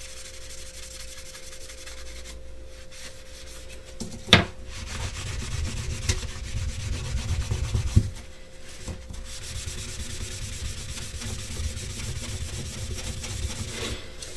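Wadded paper towel rubbing graphite powder into an armor plate with firm circular buffing strokes. There is a sharp knock a little over four seconds in and another near eight seconds.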